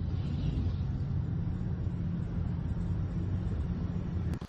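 Armoured military vehicles driving on a road, giving a steady low engine and road rumble.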